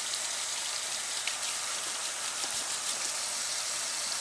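Hot water running from a kitchen faucet into a stainless steel sink and splashing onto dishes, a steady hiss, as a spatula is rinsed under it to get the grease off.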